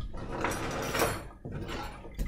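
Handling noise: a scraping, rustling sound lasting about a second with a sharp click near its end, then quieter shuffling.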